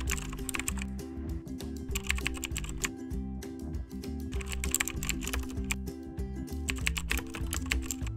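Computer-keyboard typing sound effect: four bursts of rapid clicks, roughly two seconds apart, over background music.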